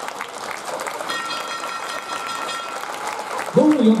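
Audience applauding in the wrestling hall just after a pinfall. A steady high ringing tone runs for about a second and a half in the middle, and a man's voice comes in near the end.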